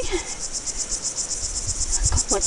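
Insects chirping in a high-pitched, fast and even pulsing chorus.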